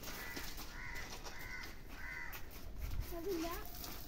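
A crow cawing, about four short harsh caws in the first couple of seconds. A short bit of a child's voice follows about three seconds in.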